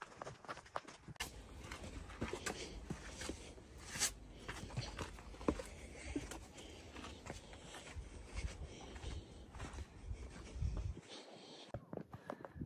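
Footsteps crunching on a sandy, stony hiking trail, irregular steps, over a low rumble that stops about eleven seconds in.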